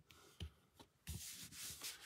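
Hands pressing and smoothing a glued sheet of patterned paper onto a cardstock card base: faint paper rubbing and rustling, with a couple of soft taps against the table in the first second.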